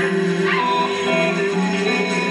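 Live rock band playing, with electric guitar and a sustained low note underneath, and a short high yelping swoop about half a second in.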